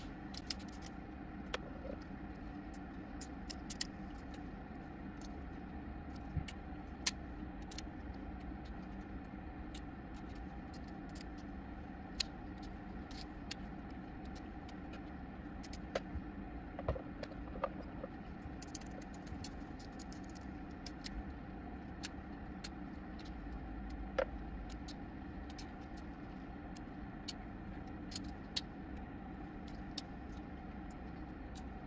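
Irregular sharp clicks and snaps of small resin supports breaking off 3D-printed parts, over a steady low background hum.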